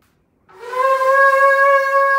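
A shofar blown in one long, steady note that starts about half a second in and is still held at the end, one of a series of blasts.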